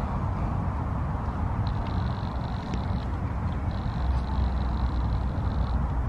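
Steady low rumbling outdoor background noise, heavier in the second half, with a faint thin high tone that comes in twice.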